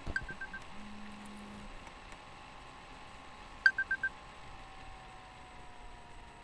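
Two sets of four quick electronic beeps on one pitch, about three and a half seconds apart, the second set louder, over a faint steady hum. A brief low tone sounds about a second in.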